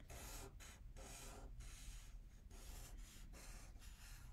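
Faint strokes of a black felt-tip marker drawing on paper: a run of short strokes with brief pauses, about two a second, as a petal outline is drawn.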